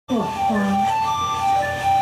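Big band music: a melody of long held notes, one note following another.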